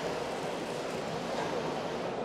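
Steady background noise of a busy exhibition hall, an even hiss with no distinct events.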